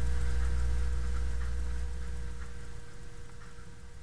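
Felt-tip marker strokes on a whiteboard, faint and intermittent, as letters are written. Under them runs a low rumble that fades away about three seconds in, with a faint steady hum.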